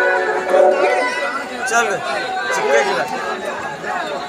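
Crowd chatter: many voices talking at once, with a short held note about half a second in.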